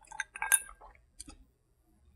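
Small sounds of a sip from a hand-held glass: a few soft clicks and a light glass clink, the loudest about half a second in.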